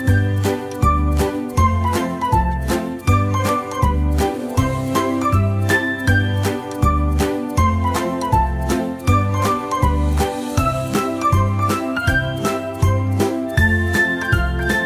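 Upbeat background music with a steady beat under a melody of short, bright notes.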